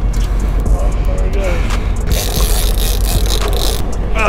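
Boat engine running with a steady low rumble, and a hiss that lasts under two seconds about halfway through.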